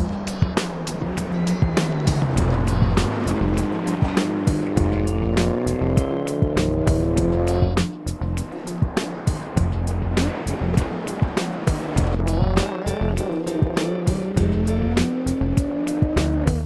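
Rally car engines accelerating hard, the engine note climbing through the revs; one climb cuts off suddenly about halfway through and another starts near the end. A background music track with a steady beat plays over the cars.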